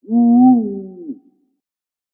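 A single low hooting tone, a little over a second long, rising slightly and then sliding down in pitch as it fades out.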